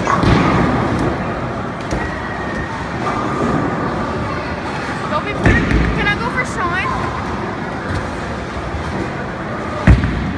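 Bowling alley din: indistinct voices and chatter over a steady background, with a few knocks and one sharp, loud thud just before the end.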